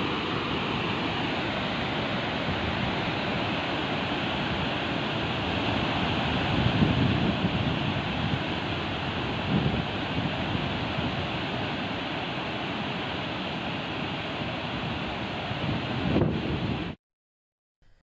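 Floodwater gushing through the open crest gates of the Kabini dam spillway: a steady, loud rush of falling water, with a few louder low gusts of wind on the microphone. It cuts off suddenly about a second before the end.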